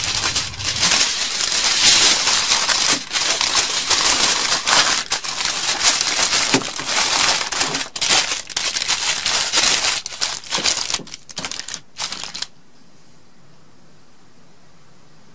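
Aluminum foil crinkling and crumpling as it is folded and pressed by hand around a cell phone, in irregular rustling bursts that stop suddenly near the end.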